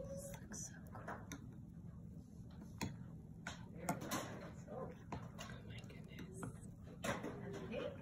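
Metal spoon stirring frothy milk in a ceramic mug, clinking sharply against the cup several times, with faint voices in the background.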